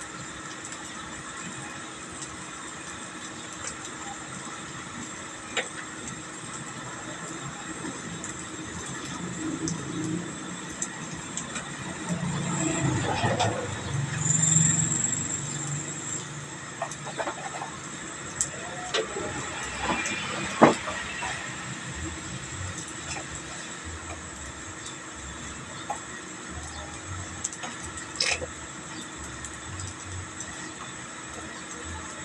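Steady background hum with scattered light clicks and knocks of utensils at a stainless-steel flat-top griddle. A low rumble builds and fades about twelve to sixteen seconds in, and there is a sharper clack about twenty seconds in.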